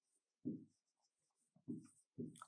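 Faint marker strokes on a whiteboard while writing: two brief soft scrapes, about half a second in and near the end, against near silence.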